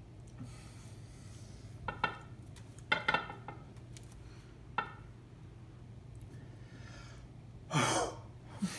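People breathing heavily, with short huffs about two, three and five seconds in and a loud blowing exhale near the end, over a steady low hum.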